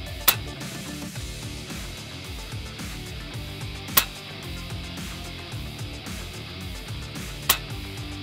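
Three sharp shots from an FX PCP air rifle firing heavy slugs, spaced about three and a half seconds apart, over background music.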